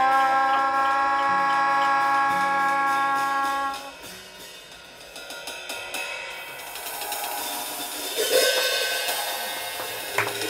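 Trumpet and melodica hold a long note together over bass, cutting off about four seconds in; then cymbals shimmer and swell toward the end.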